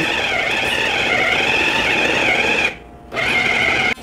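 Electric bowl food chopper's motor running with a steady whir as its blades mince raw mutton with spices, its whine wavering slightly in pitch. It stops briefly about three seconds in, then runs again.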